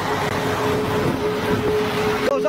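Steady running noise of a moving truck heard inside its cab: engine and road noise with a steady hum.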